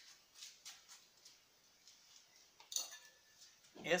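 Small hard parts clinking and knocking as they are picked up and handled, faint at first with a brief clatter about three seconds in.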